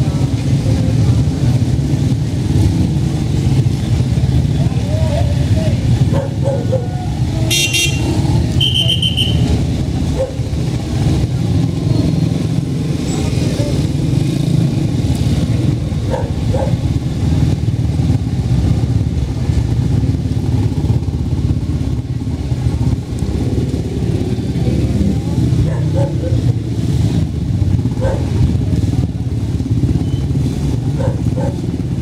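Motorcycle tricycles' small engines running at low speed in a slow, close column, a steady low drone, with two short high-pitched horn toots about eight seconds in.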